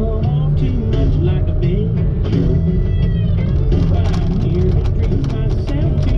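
Country song with guitar and a singing voice.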